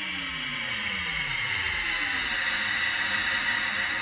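Dark electro music in a beatless breakdown: a distorted synth tone slides steadily down in pitch over about two seconds beneath a sustained bright, hissing wash.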